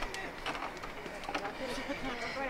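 Faint voices talking over quiet outdoor background noise.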